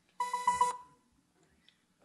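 A short electronic beeping tone with a rapid warble, about half a second long, dying away quickly, from the soundtrack of the video being projected.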